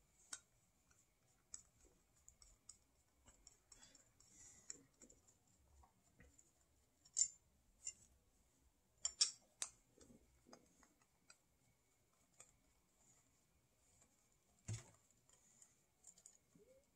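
Faint, scattered clicks and small scrapes of a screwdriver turning small screws out of a plastic bracket on a brass ball valve, with a few sharper clicks now and then.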